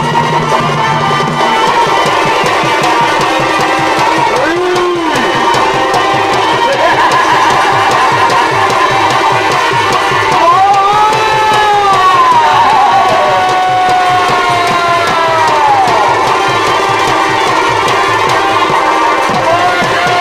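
Live Purulia Chhau dance music: fast, dense drumming under a sustained reed-pipe melody that slides up and down in pitch, most clearly about halfway through.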